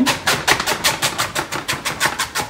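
Cling film being pulled off its roll in a cardboard dispenser box: a rapid run of sharp crackles, about ten a second, as the film peels away from the roll.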